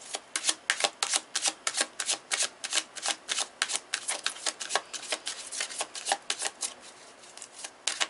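A tarot deck being shuffled by hand, the cards slapping together in a quick, irregular run of sharp clicks, with a brief pause about seven seconds in.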